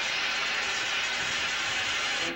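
Steady, loud rushing hiss with no distinct tones.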